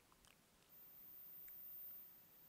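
Near silence: faint room tone with a few soft clicks, and a very high, faint steady whine that starts about two thirds of a second in.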